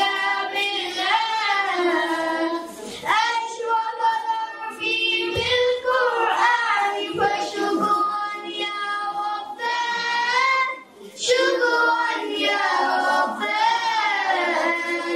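Children's voices singing a melodic song into microphones, with long held notes. The singing breaks off briefly about eleven seconds in.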